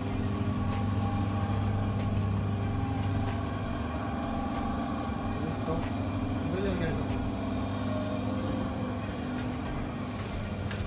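Steady low hum of supermarket refrigeration units, an even drone with no break.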